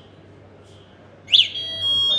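Electric scooter's anti-theft alarm sounding on a remote key-fob press as the scooter unlocks and switches on: a short rising-and-falling chirp about a second in, then a steady high electronic beep that steps up in pitch near the end.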